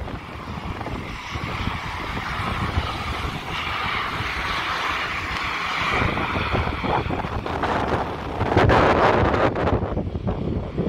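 Aer Lingus ATR-72 twin turboprop on its takeoff roll, its engine and propeller noise building and loudest about eight to nine seconds in as it passes. Wind buffets the microphone throughout.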